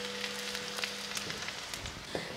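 Chopped garlic sizzling gently in hot oil in an aluminium wok, a soft even hiss with scattered faint crackles as it browns.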